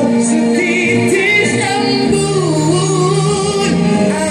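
A man singing live into a microphone over musical accompaniment, his voice bending and sliding through long held notes.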